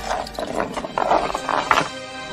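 A coin rolling and clattering across a wooden floor, in a run of irregular rattles that grow louder toward the end.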